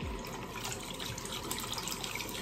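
Water from a tap running steadily into a sink as a soap dish is rinsed out under it.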